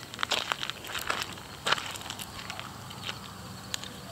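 Footsteps crunching on a gravel path, irregular crunches that come thickly in the first two seconds and then thin out.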